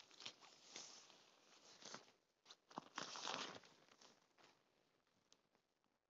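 Faint rustling and crinkling of a camouflage oxford-fabric fly sheet being pulled and settled over a hammock tent, in irregular bursts through the first four and a half seconds, loudest a little after three seconds.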